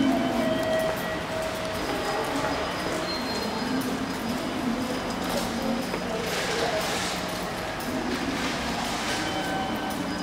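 Echoing ambience of a tiled underground walkway: a steady low hum and broad rumble, with faint short musical tones and footsteps, the footsteps most noticeable in the middle of the stretch.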